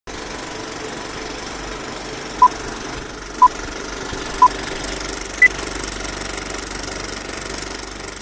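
Film-leader countdown sound effect: a steady old-film projector rattle with three short beeps about a second apart, then a fourth, higher beep a second later.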